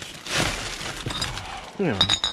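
Empty plastic bottles and clear plastic film crinkling and crackling as they are shifted around in a dumpster. The crackle is loudest in the first second, then goes on lighter with a few sharp clinks.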